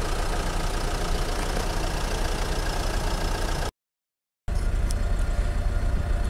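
A motor vehicle engine idling steadily with a low rumble. The sound cuts out completely for under a second past the middle, then carries on.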